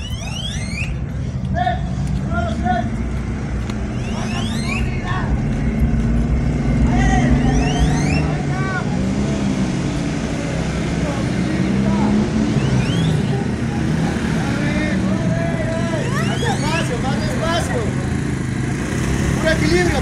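Several motorcycle engines running at low revs as the riders creep forward in a slow race, with a crowd's voices and shouts over them.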